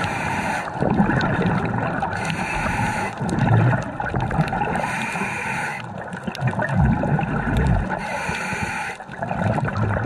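Scuba regulator breathing underwater: hissing inhalations alternating with bubbling bursts of exhaled air, repeating over a few breath cycles.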